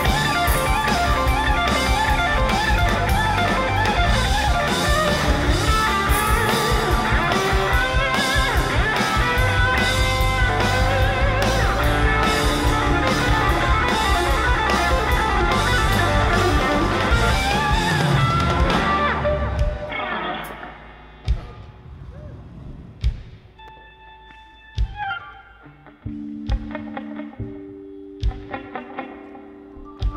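Live band music led by electric guitar over bass and drums. The full band stops suddenly about two-thirds of the way in, leaving a quieter, sparse passage of a few isolated hits and short held notes. Steady low held notes come in near the end.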